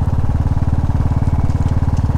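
Motorcycle engine running steadily while riding, a fast even pulsing beat.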